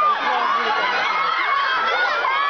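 Crowd of fans screaming and shouting, many high-pitched voices overlapping at once.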